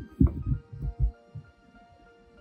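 Soft background music with held notes. Over it, in the first second, come four dull low thumps: handling noise from the hand-held phone as it is moved in over the dashboard.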